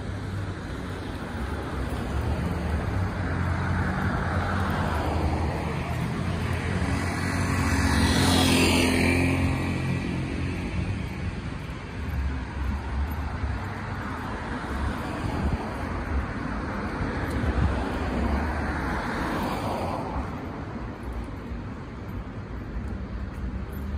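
Street traffic: cars passing close by with engine rumble and tyre noise. The loudest pass comes about eight seconds in, and another swells and fades near the end.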